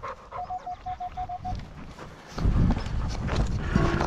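Metal detector pinpointer beeping in a rapid run of short, even beeps at one pitch for the first second and a half, sounding on a target in the dug plug. A dog pants close by, and a louder rustle comes about two and a half seconds in.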